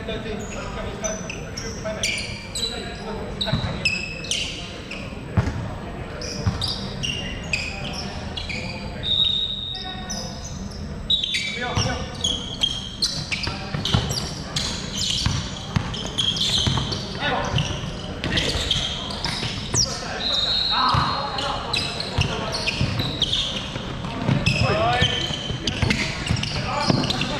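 Basketball game on a hardwood court in a large, echoing gym: the ball bouncing, short high squeaks from sneakers, footfalls, and players calling out.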